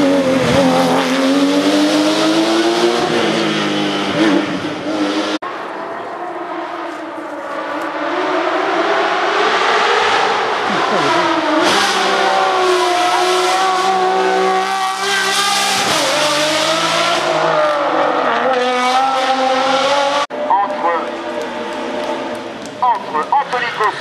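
Hill-climb racing cars, first a Porsche 911 GT race car and then a red sports racer, passing close one after another under hard acceleration. Their engines rev high, and the pitch climbs and drops as they change gear. The sound breaks off abruptly twice, about five seconds in and near the end.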